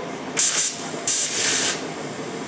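TIG welding torch on mild steel giving two short bursts of hiss, the first about half a second long and the second a little longer, as the arc is started.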